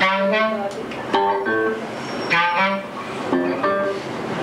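Live clarinet and electric guitar playing together, the clarinet carrying a melody in short phrases about once a second over the guitar.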